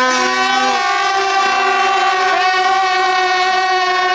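Brass band horns holding long sustained chords: the chord changes under a second in, then the new one is held steady.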